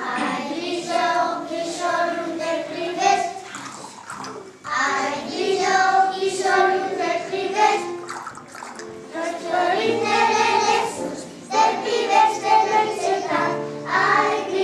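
Group of young children singing together in unison, in phrases broken by short breaths about four and eleven seconds in, over steady sustained low accompanying notes.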